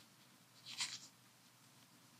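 A single brief rustle of paper a little under a second in, pages being turned on a lectern and picked up by a handheld microphone; otherwise a quiet room.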